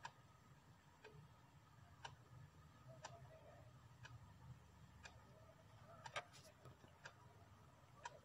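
Faint ticking of a clock, one tick each second, against near silence.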